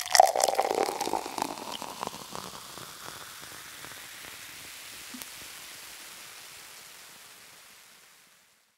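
Sparkling wine poured into a glass: splashing at first, then a steady fizzing hiss that slowly fades away near the end.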